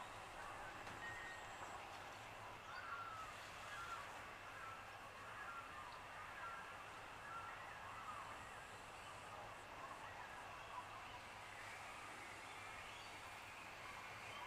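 Quiet outdoor ambience: a low steady hiss with faint, scattered chirps of distant birds, mostly in the first half.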